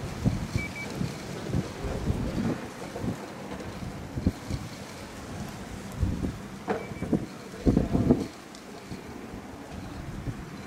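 Wind buffeting the microphone in irregular low gusts, with a couple of dull thumps in the second half.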